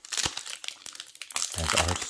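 Foil trading-card booster pack crinkling loudly in the hands as it is pulled and torn open.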